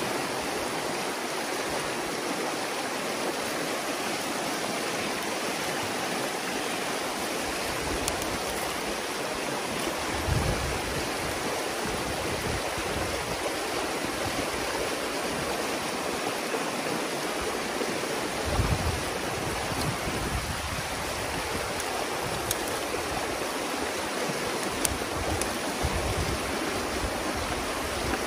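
Water rushing steadily through a breach torn in a beaver dam, pouring through the gap as churning whitewater. A few brief low bumps come through now and then.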